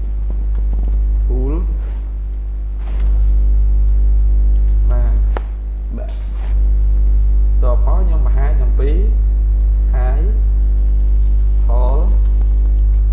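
Loud, steady low electrical mains hum on the recording, stepping up in level about three seconds in, dipping for about a second near the middle, then coming back up. Faint speech is heard through it now and then.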